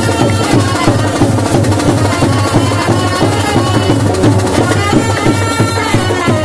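Loud traditional Indian music with fast, dense drumming under a held melody line, playing steadily throughout.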